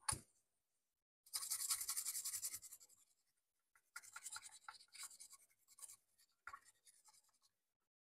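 Toothbrush bristles scrubbing a printed circuit board to clean it for soldering. A quick run of brushing strokes lasts about a second and a half, then after a pause come shorter, broken bursts of scrubbing.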